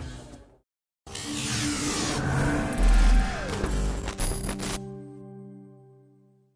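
An animated logo sting: after the race sound fades to a brief silence, a swelling whoosh comes in with a deep boom about two seconds in and a falling sweep, then it settles into a held synth chord that fades away.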